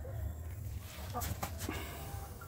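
Hens clucking softly a few times, about a second in, over a steady low hum.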